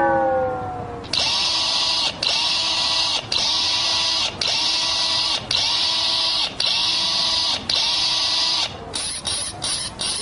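A buzzing, machine-like electronic whirr repeated seven times, each burst about a second long with a brief cut between them, from the dance soundtrack played for a robot-style routine. Sharp clicking ticks follow near the end.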